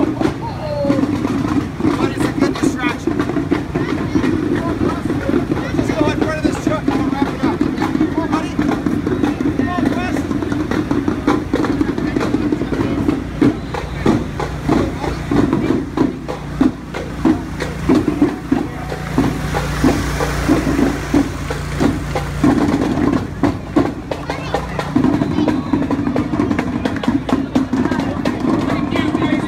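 A generator's steady hum under the chatter of a street crowd, fading for a stretch midway and returning near the end, with scattered sharp knocks and taps throughout.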